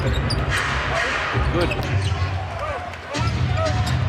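Basketball game sound on hardwood: a ball being dribbled, short sneaker squeaks and the arena crowd's steady murmur, with a brief drop in loudness about three seconds in where the footage cuts.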